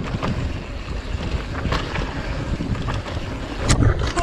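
Mountain bike rolling down a dirt forest trail: a steady rush of wind buffeting the microphone over tyre and drivetrain rattle, with a few sharp clacks from the bike, the loudest a knock near the end.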